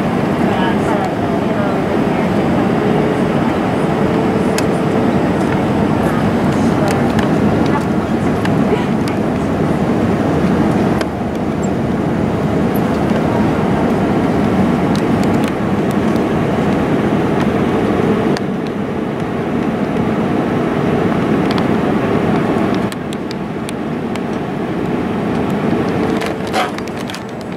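Steady roar of jet airliner cabin noise on approach, engines and airflow heard from a window seat over the wing. It drops in level in steps, about 11 seconds in, again about 18 seconds in, and again near the end.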